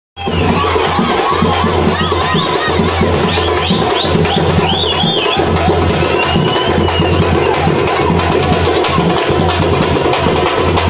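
Loud, dense procession drumming with crowd noise. A run of high, wavering whistle-like glides sounds from about two to five seconds in.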